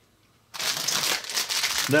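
About half a second in, a plastic candy wrapper starts crinkling as a pack of gummy candy tubes is picked up and handled. The crinkling is dense and crackly.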